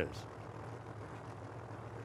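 Two Pro Modified drag-race cars' engines idling as they creep up to the staging beams, heard as a steady low drone.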